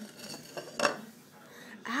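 A single sharp knock of hard objects at the table a little under a second in, preceded by a fainter click. It sounds like a ceramic bowl or plastic cube being handled.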